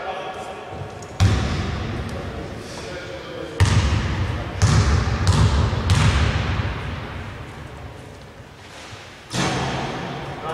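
A basketball bouncing on the indoor court, about five loud bounces spaced irregularly a second or so apart, as a player dribbles at the free-throw line. Each bounce rings on in the big hall's echo.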